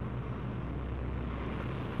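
Steady low drone of propeller aircraft engines.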